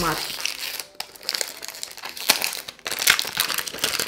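Crinkling wrapping and cardboard of a Chanel N°5 spray box being unwrapped and opened by hand: a run of irregular crackles and small clicks.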